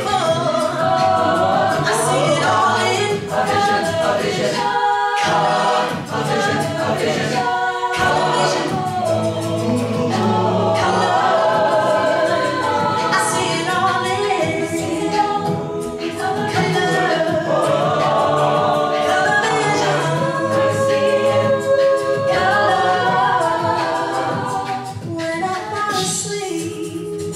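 Mixed-voice a cappella ensemble singing: a lead vocalist over layered backing harmonies, with vocal percussion keeping a steady beat.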